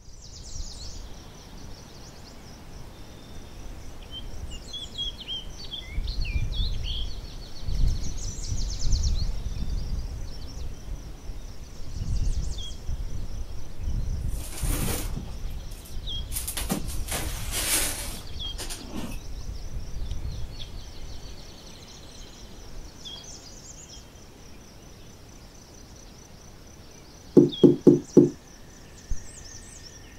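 Outdoor ambience of birds chirping and a steady high insect buzz, with a low rumble and bursts of rough noise through the middle. Near the end come four quick knocks, then one more.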